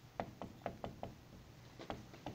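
Dry-erase marker tapping and stroking on a whiteboard as words are written: a quick, irregular run of light, sharp taps, with a short pause before two more near the end.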